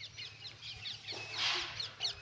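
Birds chirping: many short, quick chirps following one another, with a chicken clucking among them.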